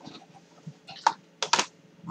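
A few light clicks and taps from a hard rating board being set down and shifted on a desk: one about a second in, then two close together about half a second later.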